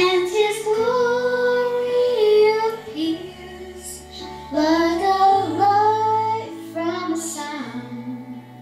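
A young girl singing a worship song into a handheld microphone over an accompaniment of held low notes, in two sung phrases, the second beginning about four and a half seconds in.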